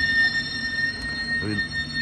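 London Underground train at the platform giving a steady high-pitched whine over a low rumble.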